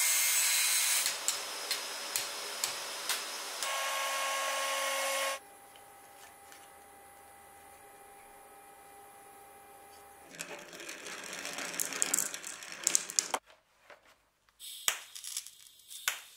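Angle grinder cutting sheet aluminium, loudest in the first second and then lighter, stopping abruptly about five seconds in. After a quiet stretch comes more power-tool noise, and near the end a few short crackling bursts from a MIG welder.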